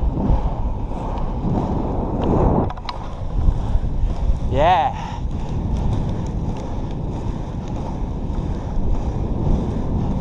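Inline-skate wheels rolling fast on asphalt under a steady rush of wind on the microphone, with a few clicks from the skating strides.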